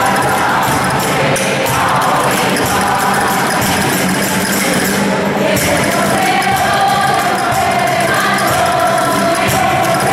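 A church choir and congregation singing a hymn together, accompanied by guitar and jingling percussion.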